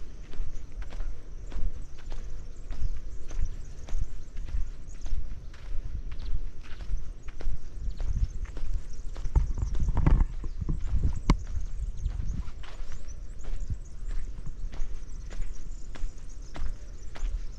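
Footsteps on a dry, hard-packed dirt path, about two steps a second, over a steady low rumble that swells louder about ten seconds in.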